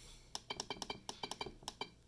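The DOWN button of a FlySky FS-i6X radio transmitter pressed repeatedly to scroll through a menu: a quick run of about a dozen short clicks, some six a second.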